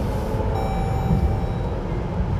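Steady low rumble of road and drivetrain noise inside the cabin of a 2023 Jeep Grand Cherokee moving at road speed. A faint, thin, steady high tone joins about half a second in.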